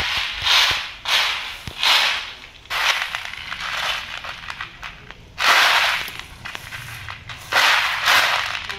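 Dried soybeans rattling and swishing as hands stir and sweep through them in a large woven bamboo tray, in a series of surges about a second apart, the loudest a little past halfway and near the end.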